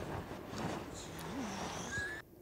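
Steady, low noisy din of a TV battle scene's soundtrack playing back, with no single sound standing out. A short low tone rises and falls just past halfway.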